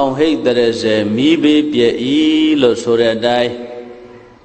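A man chanting Buddhist paritta verses in Pali in a steady, sing-song recitation tone. The phrase ends about three and a half seconds in and trails off.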